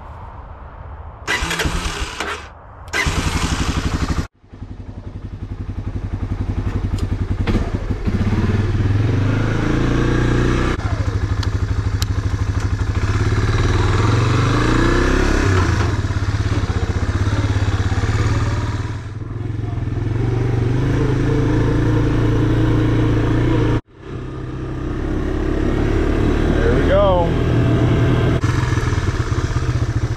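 A motorcycle engine running, its revs rising and falling, in separate clips joined by abrupt cuts. Two short bursts of rushing noise come in the first few seconds.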